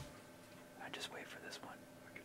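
Hushed whispering between hunters, a brief run of soft words with sharp hissing sounds about a second in.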